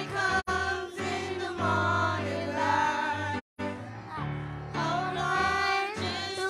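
A group of children singing together into microphones over instrumental accompaniment with a steady bass line. The sound cuts out completely for a moment twice, about half a second in and near the middle.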